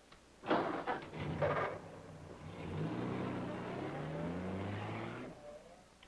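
Car engine accelerating away, its pitch rising steadily for about three seconds and then fading out. Two short loud bursts of noise come before it.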